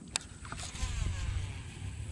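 Baitcasting reel's spool spinning out line during a cast, its whirr falling in pitch as the spool slows, with a sharp click near the start and a steady low rumble underneath.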